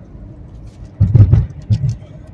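Steady low rumble inside a moving car's cabin. Loud low thumps come about a second in and again near the end.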